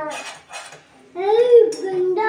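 A toddler's high-pitched voice calling out in one long rising-then-falling cry about a second in, with light clinks of metal utensils against a steel cooking pot.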